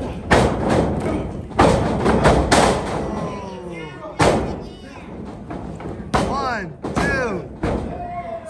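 Several heavy thuds of wrestlers' bodies hitting the ring canvas, the loudest in the first three seconds, with voices shouting between them.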